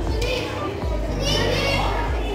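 Many children's voices talking and calling out at once, a steady hubbub of chatter.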